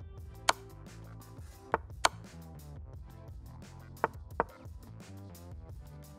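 Quiet background music with five sharp clicks of moves being played on an online chess board, the last four in two quick pairs.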